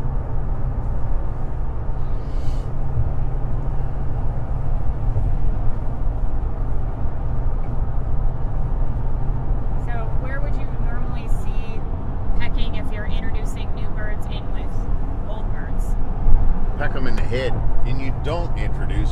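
Steady low rumble of background noise, with snatches of voices in the second half.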